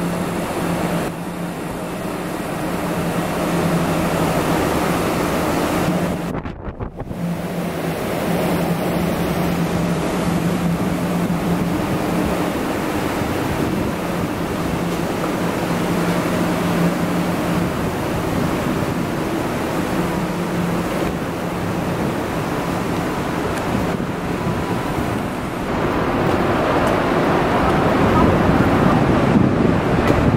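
Steady city street noise with a low, constant hum and wind rushing on the microphone; the sound drops out briefly about six seconds in.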